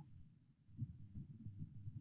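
Near silence on an online call, with only faint, irregular low thuds and rumble.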